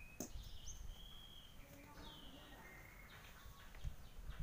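Faint birdsong: a few short whistled notes and slurred chirps over low background noise, with a single sharp click about a quarter second in.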